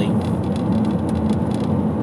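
Steady low drone of a car being driven, heard from inside the cabin: engine and road noise.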